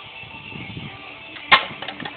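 A single sharp knock about one and a half seconds in, as a thrown ball hits a plastic cup and knocks it off a wooden plank. Faint music plays underneath.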